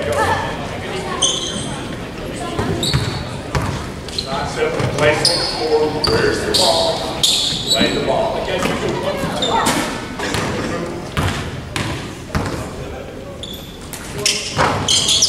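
Basketball game sounds echoing in a large gym: a ball bouncing on the hardwood floor, short high sneaker squeaks and indistinct players' voices.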